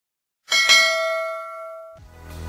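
A single notification-bell chime sound effect: one bright ding struck about half a second in, ringing on with several tones and fading out.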